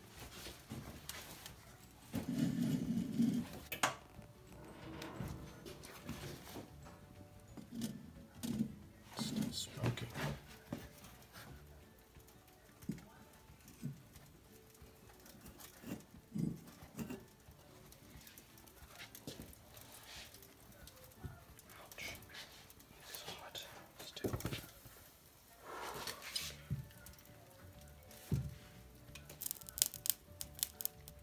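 Scattered clinks, scrapes and knocks of steel tongs and a hot crucible being handled: gripped and lifted out of an open electric heat-treating oven, then tipped over a steel ingot mold to pour molten alloy.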